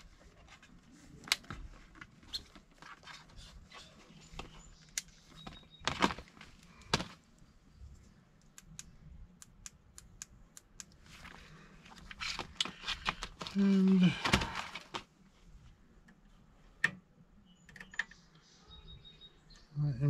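Scattered light clicks and knocks of hands handling multimeter test leads and wiring at a gas furnace's control board, with a run of quick small clicks in the middle and a brief mumbled voice a little past the middle.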